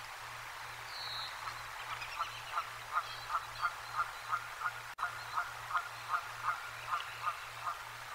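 An animal giving a long, even series of short calls, about three a second, building up over the first couple of seconds and fading near the end.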